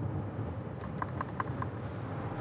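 A short run of light ticks, about five in under a second around the middle, from a small file worked against the Bentley Bentayga's solid milled-metal paddle shifter. A low steady cabin hum runs underneath.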